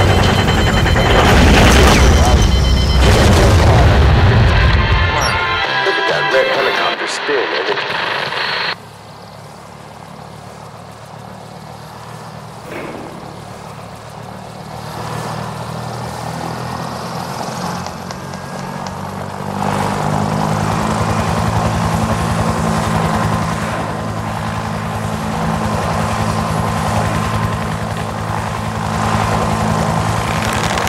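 Film soundtrack played over a hall's speakers: loud war sounds of explosions, gunfire and helicopters for the first nine seconds or so, cutting off suddenly. After a quieter stretch, a steady low motor drone sets in about two-thirds of the way through.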